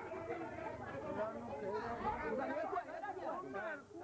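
Several people talking over one another, untranscribed speech with no other sound standing out.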